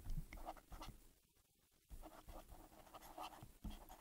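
Faint short strokes of a stylus writing on a pen tablet, with a pause of about a second near the middle.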